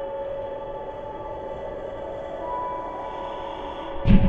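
Ambient soundtrack drone: several steady held synth tones over a low rumble, a higher tone sounding briefly in the second half. Right at the end a heavy bass comes in and the level jumps.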